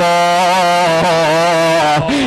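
A man's voice holding one long chanted note in a sing-song preaching delivery, the pitch steady with a slight waver in its tone.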